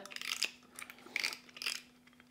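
Light clicks and rattles of a spinning reel being handled as its spool is taken off to be swapped for a spare spool, coming in a few short bursts.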